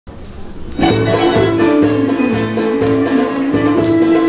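A Turkish art music ensemble starting an instrumental introduction about a second in, with violin and plucked strings playing a stepping melody over a steady low beat.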